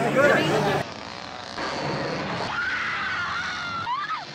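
Horror-film soundtrack: a steady noisy rumble under a woman's long, high scream that falls slightly in pitch, as she escapes in the back of a pickup truck.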